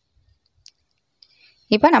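Near silence with two faint, short clicks about half a second apart, then a voice starts speaking near the end.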